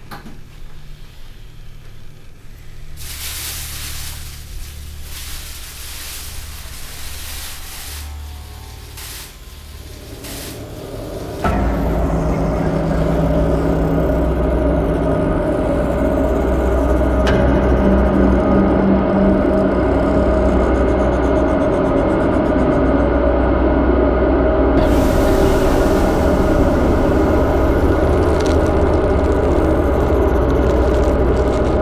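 Horror film score. A quiet low drone with a few noisy swells runs for the first third, then the sound jumps suddenly to a loud, dense drone of many held tones that carries on to the end.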